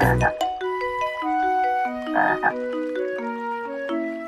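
Cartoon frog sound effect croaking, briefly at the very start and again about two seconds in, over a light children's tune of stepping notes on a xylophone-like mallet instrument.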